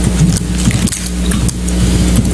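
Steady low electrical hum with background hiss on a courtroom microphone feed, with no one speaking.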